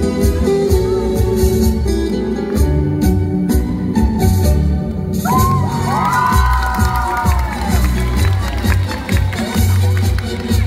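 Recorded dance music playing over loudspeakers in a hall. About halfway through, a heavier bass beat comes in and a long high vocal cry rises over it for about two seconds.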